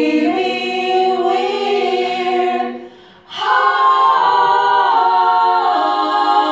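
Women's vocal group singing long held notes in harmony. The chord breaks off briefly about three seconds in, then a new chord is held.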